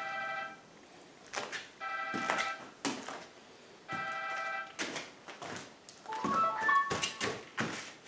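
A phone ringtone, repeating about every two seconds, then a short run of rising notes near the end, with a few light knocks between the rings.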